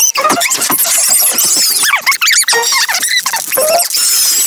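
A cartoon soundtrack played at four times normal speed: voices and sounds turned into rapid, high-pitched squeaky chatter.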